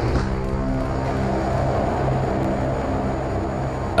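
Background music: a slow score of long, held chords at a steady level.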